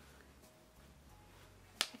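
Faint room tone, then a single sharp click near the end.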